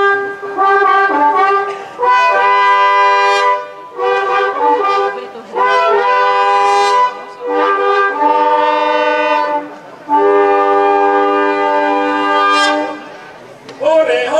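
Long wooden shepherd's horns blown in about six short calls, each a few steady notes with a brief pause between calls; the last call, near the end, is the longest.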